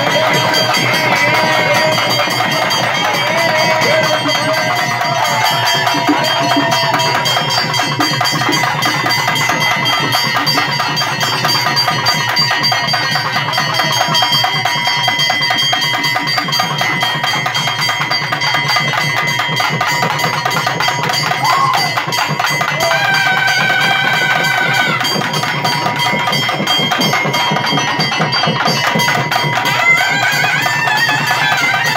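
A naiyandi melam band playing loud, fast, unbroken drumming, with held notes and short melodic runs from nadaswaram-type reed pipes above it. This is the band's music for a possession dance (sami aattam).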